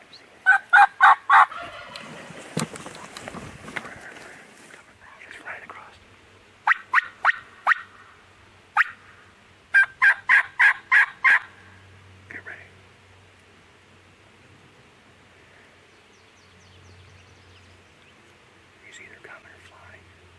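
Turkey yelping: three loud, close runs of short evenly spaced yelps, about four a second, the last run the longest. A rustle comes between the first two runs.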